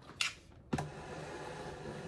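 Handling noise as the recording camera is moved and repositioned: a brief scrape, then a knock about three-quarters of a second in, followed by steady rubbing noise with a low hum.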